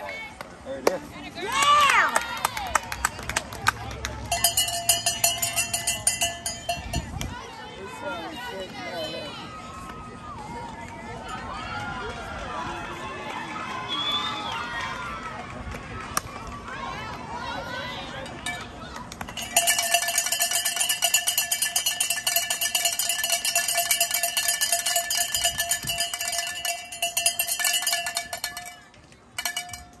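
A cowbell rung fast and steadily, in two spells: a few seconds starting about four seconds in, then about nine seconds starting near twenty seconds in. Voices from the crowd shout and cheer in between.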